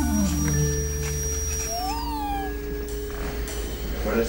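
Electronic music tones: low held tones under a high steady whistle that slides down in pitch about two seconds in, with a short warbling glide in the middle range.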